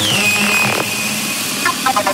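Psytrance track in a breakdown: the kick drum and bassline drop out, leaving a falling high synth zap that settles into a held tone over a buzzing synth texture. The texture cuts off under a second in, and a few short synth blips near the end lead back toward the beat.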